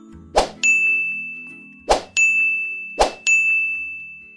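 Sound effects of an animated subscribe end screen: three sharp pops, each followed by a bright bell-like ding, the last ding ringing on and fading away.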